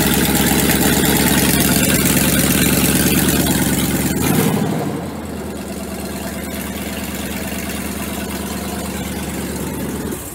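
Toyota Tundra engine running through an exhaust that is cut open where the catalytic converters were sawn out by thieves, so it sounds loud and raw. About four and a half seconds in, it drops to a quieter, lower-pitched idle.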